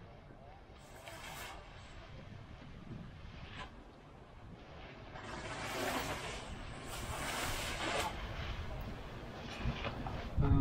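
Wind buffeting the microphone, rising into stronger gusts in the second half, with faint voices underneath.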